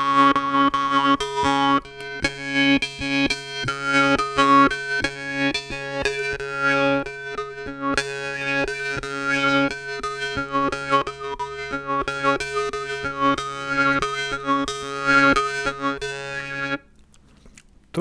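A Russian-Swedish style jaw harp (vargan) by Dmitry Babayev is played as a melody. A steady low drone sounds under rapid plucks, while shifting overtones pick out the tune. The playing stops about a second before the end.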